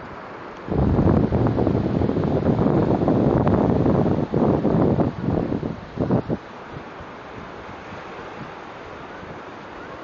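Wind buffeting a phone's microphone at the shore: a loud, deep rushing that starts suddenly about a second in, comes in gusts and dies away after about six seconds, leaving a quieter steady rush of surf and wind.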